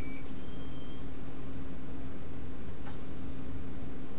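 Steady low electrical hum over hiss, with a few brief faint high tones near the start and a faint click about three seconds in.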